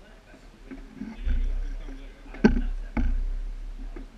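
A low rumble starts about a second in, then come two sharp knocks about half a second apart, each fading out slowly. Faint voices can be heard underneath.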